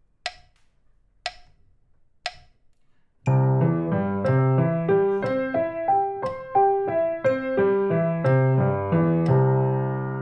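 Metronome clicking once a second at 60 beats a minute: three lone clicks as a count-in, then a piano comes in about three seconds in with a C major arpeggio played with both hands in triplets, three notes to each click, climbing three octaves and coming back down.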